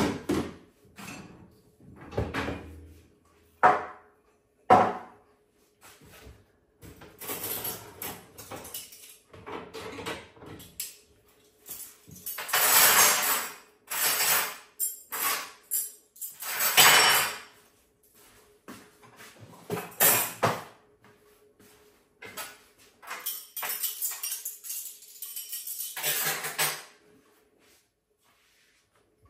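Irregular knocks, clinks and rustling of kitchen work, with dishes and utensils being handled and set down, and a few longer noisy stretches.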